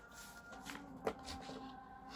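Rustling of a georgette saree as it is gathered up and lifted off a cloth-covered table, with a sharp tap about a second in.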